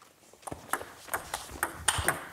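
Table tennis ball being played at a table: about six sharp clicks starting about half a second in, as the ball is served, flicked back with a chiquita receive, and hit hard on the third-ball attack, bouncing on the table between strokes.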